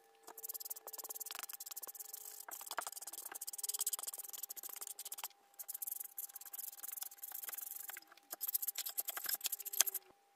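Paintbrush bristles dry-brushing white acrylic over black-painted wooden panels to distress them: quick, scratchy back-and-forth strokes, with short pauses about five and eight seconds in.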